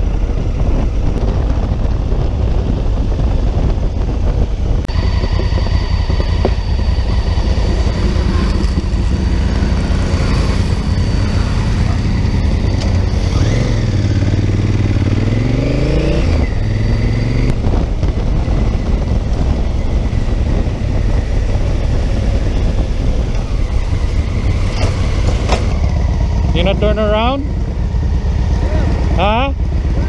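Honda Africa Twin CRF1000L parallel-twin motorcycle riding at road speed: steady wind rush over the helmet camera with the engine running beneath it. The bike slows near the end, where voices come in.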